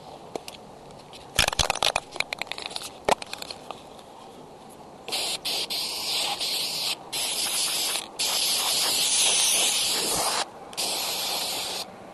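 Aerosol spray-paint can spraying the camera cords in four long hisses, each a second or two, with short breaks between. Before it, a quick run of rattling knocks.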